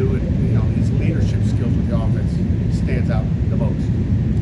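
A man's voice speaking over a steady low rumble that is the loudest thing throughout.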